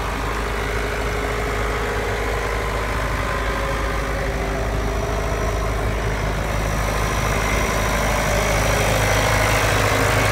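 John Deere 6400 tractor's diesel engine idling steadily, growing slightly louder over the last few seconds.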